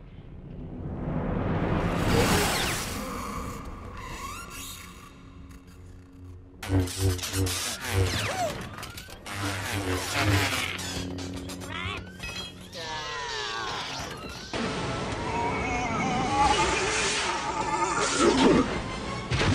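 Film soundtrack of sword-fight scenes: orchestral score under lightsaber sounds and sharp crashing impacts, with abrupt cuts from one scene's mix to another about a third and about three-quarters of the way through.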